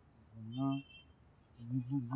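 Crickets chirping in short, high, evenly spaced pulses, about two a second. A man's voice sounds briefly about half a second in and again near the end.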